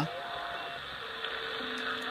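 CB radio receiving on upper sideband through its speaker: a steady hiss of band noise with a few long, steady whistling tones, one fading out early and two others starting about a second in.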